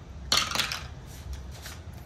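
A six-sided die rolled into a small dice box: one sharp clack about a third of a second in, then a few lighter rattles and taps as it settles.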